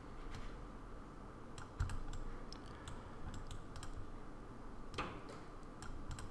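Faint, scattered clicks of a computer mouse and keyboard over low room noise, with a slightly louder knock about two seconds in and another about five seconds in.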